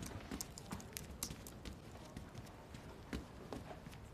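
Faint, light taps and clicks, a few a second at uneven spacing, over a soft background hiss.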